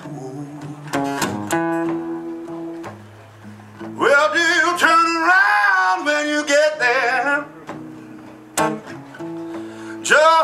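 Blues song on solo acoustic guitar: a few strummed chords and picked notes, then a man's voice sings a long, wavering line from about four seconds in to past seven, and the guitar carries on alone near the end.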